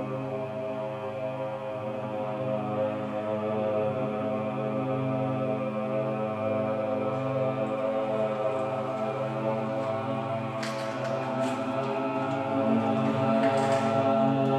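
Several men's voices chanting together in one long, steady drone. A few short clicks come about eleven seconds in and again near the end.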